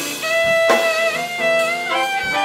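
Jazz big band playing live: tenor saxophone and trumpet hold notes with small bends over the drums, with a couple of drum hits in the first second.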